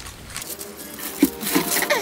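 Thin kite paper rustling and crinkling as a paper kite is lifted and turned over on a wooden table. Near the end a downward-gliding tone and steady sustained tones come in over it.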